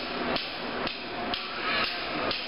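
Four sharp knocks, evenly spaced about two a second, over steady background noise.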